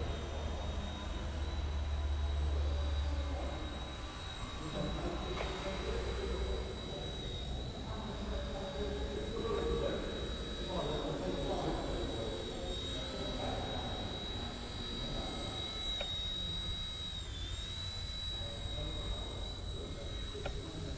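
Eachine E129 micro RC helicopter in flight: a steady high-pitched whine from its motor and rotors, with a brief dip in pitch near the end as it manoeuvres.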